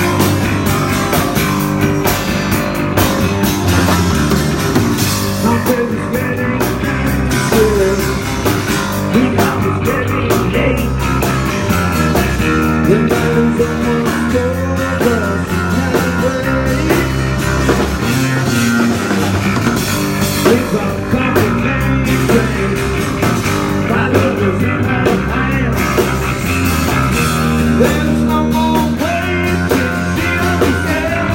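Live rock band playing a song: drum kit, bass guitar and acoustic guitar, with a man's voice singing at times.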